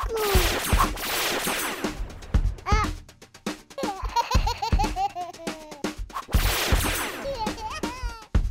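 Children's background music with a drum beat, overlaid with two long whooshing sound effects, one just after the start and one near the end, while the toy wand is waved, and a quick string of baby giggles in the middle.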